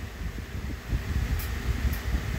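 Low, uneven rumbling background noise, with no clear event standing out.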